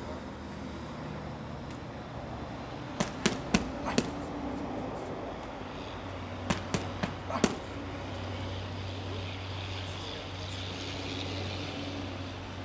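Boxing gloves punching hand-held GroupX kick pads: two quick combinations of four sharp smacks each, about three seconds apart, over a steady low hum.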